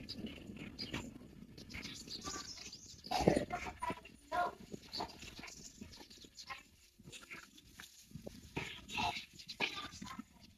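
Animal calls, a few short ones spread out, the loudest about three seconds in, over a faint outdoor background.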